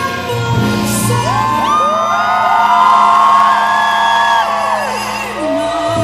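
Live band playing with a woman singing into a microphone, while many audience members whoop and cheer over the music from about two seconds in until about five seconds.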